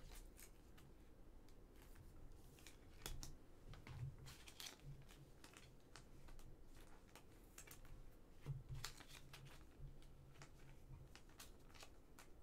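Faint rustles and light clicks of glossy trading cards and a thin plastic penny sleeve being handled, in short scattered bursts, a little busier around four to five seconds in and again around nine seconds in.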